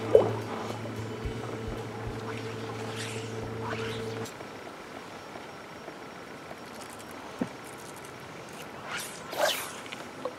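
A steady low hum that cuts off about four seconds in, leaving a quieter open-air background. Near the end come two brief swishes as a fly rod is false-cast.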